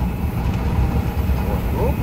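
Steady low rumble of a vehicle driving slowly over a rough, muddy dirt road, heard from inside the cab.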